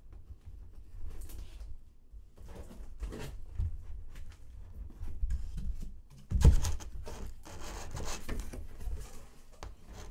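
A taped cardboard shipping box being slit open and its flaps pulled apart, with scraping and rustling of cardboard and foam packing. A loud thump about six and a half seconds in.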